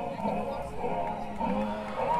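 Live band playing a soft passage of a pop song, with a man singing over bass and keys.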